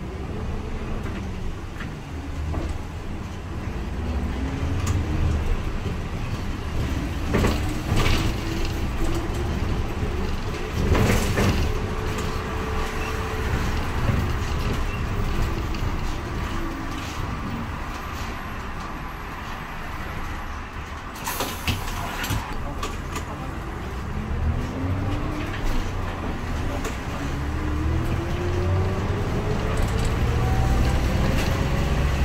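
A city bus driving, heard from inside the cabin: a steady low engine and road rumble. The engine note rises as the bus pulls away and gathers speed, eases down about halfway through, and rises again near the end. A few sharp knocks or rattles from the bus cabin cut through the rumble.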